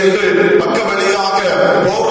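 A man's voice speaking continuously into a handheld microphone, preaching a sermon.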